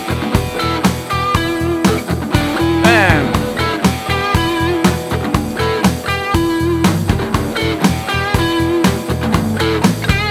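Electric lead guitar playing a short lick over and over over a backing track of drums and bass, the figure coming round about every two seconds, with a pitch glide about three seconds in.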